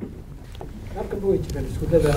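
A brief pause in a man's speech, filled by a low rumble of background noise and a faint voice.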